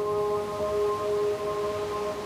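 Ambient relaxation music: a bell-like tone of several clear pitches ringing on steadily, with a slight waver.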